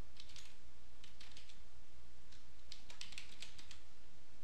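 Computer keyboard keys being typed in several short bursts of keystrokes, with pauses between them.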